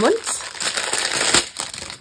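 Clear plastic packet crinkling as it is handled, with a sharper crackle about one and a half seconds in.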